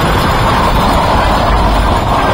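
Diesel farm tractor engine running steadily close by, loud.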